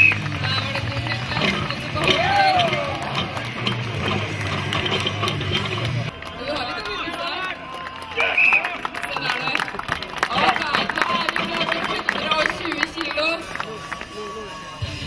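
Voices calling and shouting over background music, with a low steady hum that stops about six seconds in.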